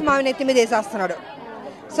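Speech only: a woman talking into a reporter's microphone, her voice fading about a second in.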